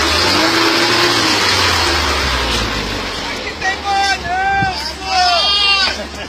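Lifted Fiat Palio on mud tyres driving slowly along a dirt trail: a low engine rumble under a steady rushing noise. In the second half, people's voices call out several times over it.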